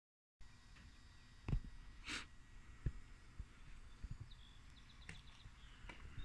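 Quiet room with a few soft knocks and a single breath from the person handling the camera while moving, plus a brief faint high chirping about two-thirds of the way through.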